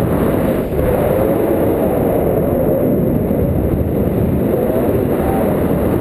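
Loud, steady rush of wind buffeting the camera microphone on a tandem paraglider in banked flight.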